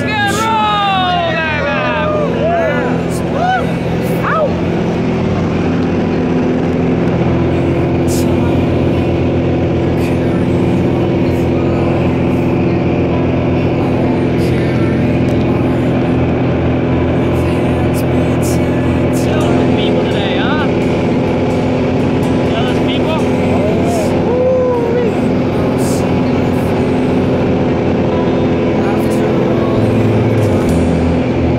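Single-engine propeller plane's engine and propeller running steadily at climb power, heard from inside the small cabin; the drone shifts in pitch about seven seconds in. Voices are heard briefly over it near the start and again around twenty seconds in.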